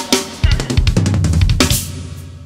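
Acoustic drum kit played in a fast fill: rapid snare and tom strokes over bass drum, closing with a cymbal crash near the end.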